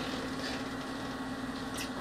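Steady room tone: a low, even background hiss with a faint constant hum, no distinct event.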